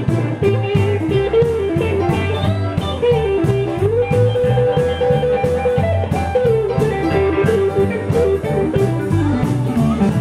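Live band playing a blues-rock number on electric guitars and drum kit. A lead line with bent notes rides over it, with one note held for about two seconds in the middle.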